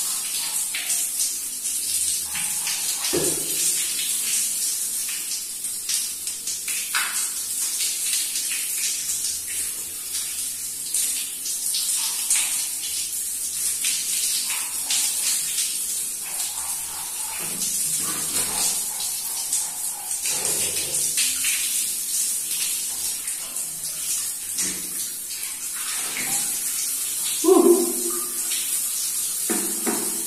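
Water running steadily and splashing as a man rinses his hair, with a steady hiss.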